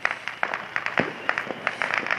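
A small firework crackling: a rapid, irregular run of short sharp pops.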